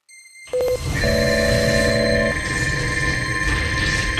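Cinematic logo-intro sound design: electronic beeping and held synthetic tones over a low rumble, starting suddenly about half a second in.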